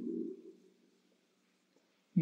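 A man's drawn-out voice fades out in the first half-second, then complete silence.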